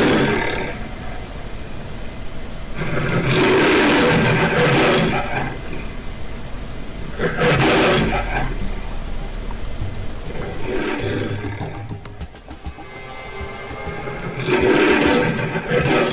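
A lion roaring, about five long roars a few seconds apart, with music underneath.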